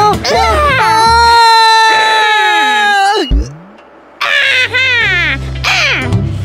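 Cartoon character's nonverbal voice: a long, high, held wail like a cry, cut off by a low thud, followed by short whining cries that fall in pitch. Cartoon background music plays under it.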